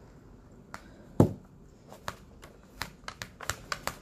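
Sharp, irregular clicks and taps of a pocket-knife point pricking air bubbles in a diamond-painting canvas under its plastic cover film, with one heavier knock about a second in and quicker clicks in the second half.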